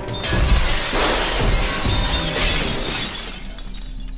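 Glass panes shattering, with a long crash of breaking and falling shards that dies away about three seconds in, over film music.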